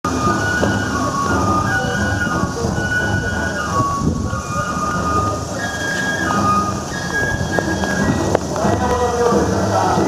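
Outdoor street ambience with a steady low rumble, over which a simple melody of high, held notes plays, each note lasting about half a second.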